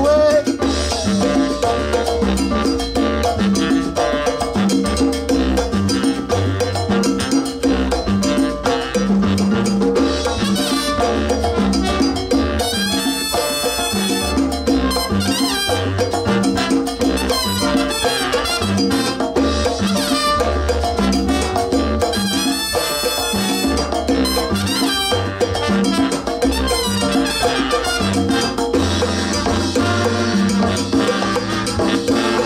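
A live salsa band playing an instrumental passage with driving percussion and no singing.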